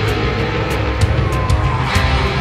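Loud hard-rock music with distorted electric guitar and a steady drum beat. A short sliding high note comes in near the end.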